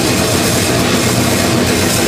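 Live heavy metal: a drum kit played fast and dense under distorted electric guitars, at a steady full level with no break.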